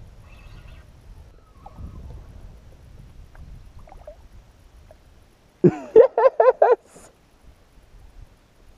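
A loud, quick run of about five rising-and-falling call notes lasting about a second, a little past the middle, over faint low wind and water noise.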